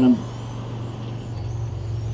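Electric radio-controlled touring cars racing on an asphalt circuit: faint high motor whines rising and falling in pitch, over a steady low hum.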